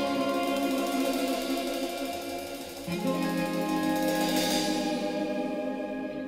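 Live band music in an instrumental passage without vocals: sustained chords that change about halfway through, with a shimmering wash that swells near the end.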